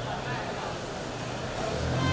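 City street noise: traffic running by with indistinct voices of people around, and a vehicle engine growing louder near the end.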